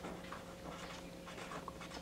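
Pen writing on paper: a faint run of short scratchy strokes as letters are written.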